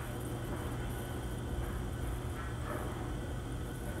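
A steady low hum with a faint hiss: background room noise, with no distinct events.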